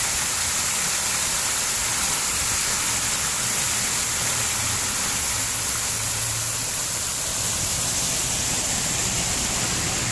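Water pouring over a dam and splashing down onto granite rocks into the creek below: a steady, even rush of falling water.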